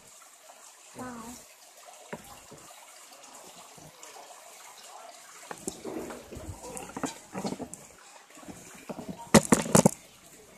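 Faint voices and light clatter at a dining table, then a burst of loud knocks and rustles near the end as the phone is moved and handled close to the microphone.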